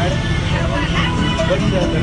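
Steady low engine rumble inside the cabin of an amphibious water bus under way on the sea, with voices talking over it.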